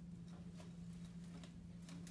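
Faint, scattered ticks and scratches of a chopstick being poked and stirred through a gritty bonsai soil mix of gravel, bark and perlite, settling it around the roots to work out air pockets. A steady low room hum runs underneath.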